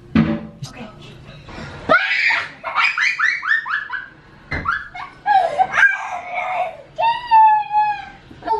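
Young children giggling and squealing in high voices: a run of rapid, high-pitched laughter from about two seconds in, more short squeals, and one held high squeal near the end.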